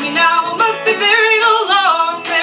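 A woman singing a drawn-out line over strummed acoustic guitar; her voice holds a note, then wavers and bends in pitch about a second and a half in.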